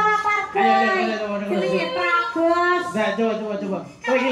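A woman's voice singing solo into a microphone, in long held notes that bend and slide in pitch, in the manner of a Javanese sinden.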